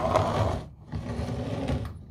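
Hard-shell guitar case sliding and scraping across a tile floor in two pushes, the second about a second long.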